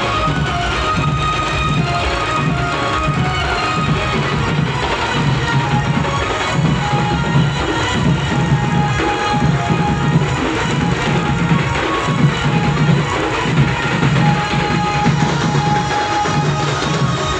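Loud procession band music: a group of large drums beating a steady, even rhythm, with sustained melodic notes sounding over the drumming.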